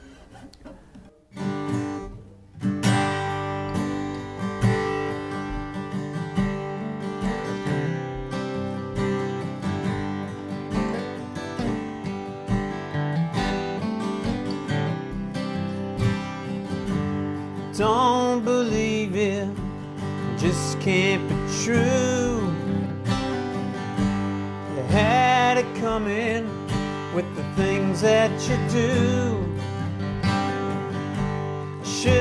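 Two acoustic guitars playing a song together, coming in with strummed chords a couple of seconds in; singing joins past the halfway point.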